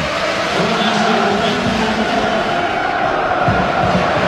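Football stadium crowd chanting together, a steady massed sound held without a break.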